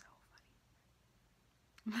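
A woman's breathy gasp trails off, then a second and a half of near silence, and near the end she starts laughing.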